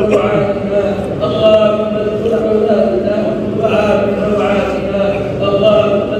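Voices chanting an Arabic supplication (dua) in long, drawn-out tones, amplified and echoing, over a steady low hum.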